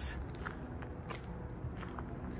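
Quiet footsteps on gravel, a few steps as someone walks along.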